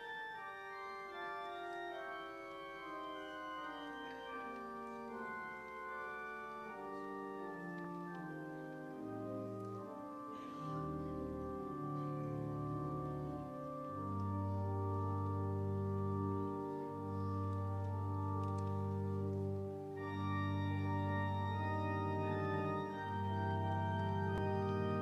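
Church organ playing a slow prelude in sustained chords, the melody stepping downward at first. Deep bass notes come in about ten seconds in, and the music grows louder and fuller from there.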